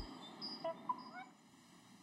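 Music breaks off, leaving a few faint, short, high squeaks with quick pitch slides in the first second and a half, then near silence.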